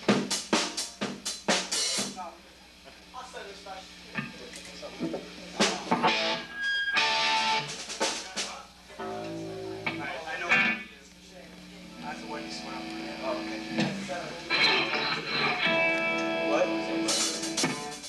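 A quick run of about half a dozen hits on a drum kit, then electric guitar sounding scattered notes and several held chords between songs, loose noodling rather than a song.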